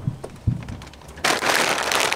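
Two dull low thumps, then a little past halfway a loud, crackling rustle starts as an empty plastic feed sack is crumpled and folded close by.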